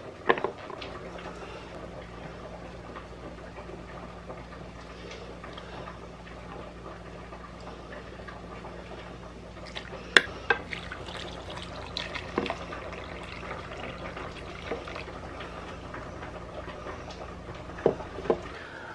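Liquid poured into a small metal saucepan of cut beets over a steady low hum, with a few sharp clinks of a measuring spoon against the pan; the loudest clink comes about ten seconds in.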